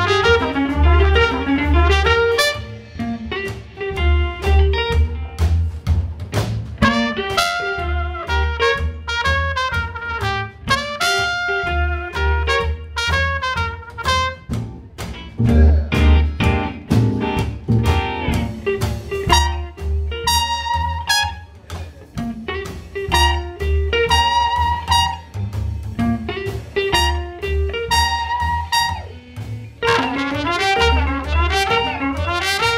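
Live western swing band playing an instrumental: trumpet carrying the melody over strummed archtop guitar and a steady low bass pulse.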